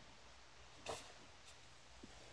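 Near silence: faint room tone, with one brief soft rustle about a second in and a tiny click after it, as hands come off a crochet swatch lying on a towel.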